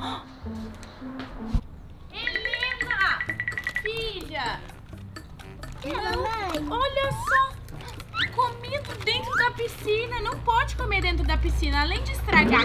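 Voices talking in short, lively phrases over background music.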